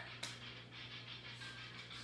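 Quiet room tone: a steady low hum with faint background noise, broken by a single short click just after the start.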